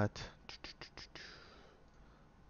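A few soft computer mouse clicks, two of them in quick succession like a double-click, followed by a short breath with a falling hiss.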